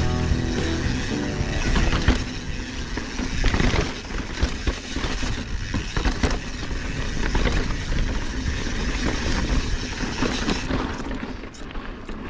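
Mountain bike ridden over a rocky dirt trail: steady tyre noise broken by frequent clicks, knocks and rattles over the bumps. Background music fades out in the first two seconds.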